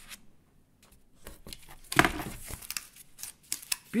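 A cardboard piece being cut and handled: a run of short, irregular scraping and rustling sounds starting about a second in, the loudest near the middle.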